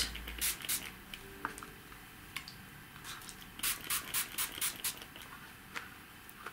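Small spray bottle spritzing water onto card: a few sprays just after the start, then a quick run of about six sprays around the middle.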